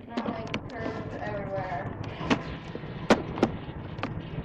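Faint, muffled voices over a low steady hum, broken by three sharp knocks: one about two seconds in, then two in quick succession near the end.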